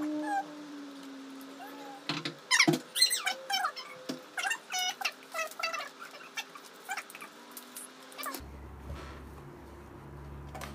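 A pet animal, cat-like, giving a quick series of short cries that rise and fall in pitch, loudest a few seconds in and dying away before the end, over a steady hum.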